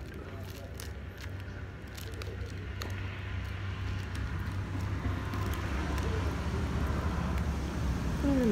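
Light clicks of a plastic phone holder clamp and wire being handled, scattered mostly through the first few seconds, over a low rumble that grows steadily louder.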